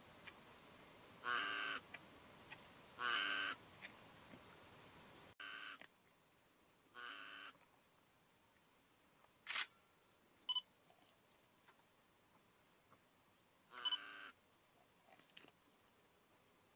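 Camera shutters firing in short rapid bursts of about half a second each, five times, with a few single sharp clicks between them.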